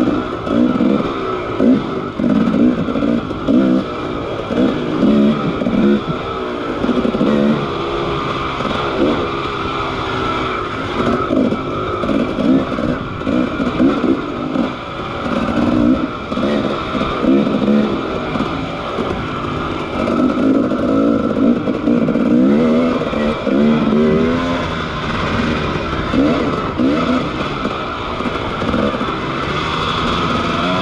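Dirt bike engine running hard, its revs rising and falling over and over as the throttle is worked along a rough trail.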